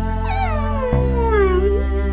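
A dog's long whine or howl, one call falling steadily in pitch over about a second and a half, over background music with sustained low droning tones.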